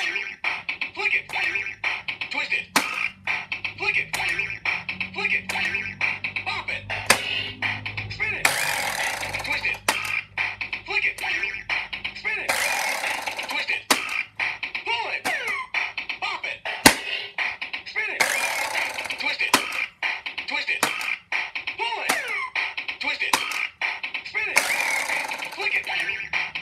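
Bop It Extreme electronic toy playing its game through its small speaker: a steady beat with sound effects and short noisy bursts, its voice calling out commands, and clicks as the handles and buttons are worked.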